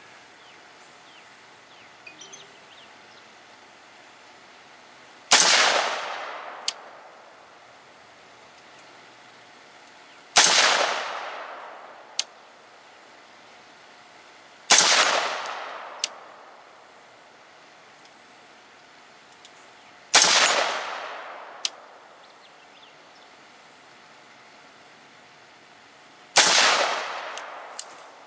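AR-15 carbine with a 14.5-inch barrel firing five single, slow aimed shots about five seconds apart. Each shot is followed by an echo that dies away over a second or so, and a faint tick comes about a second after most shots.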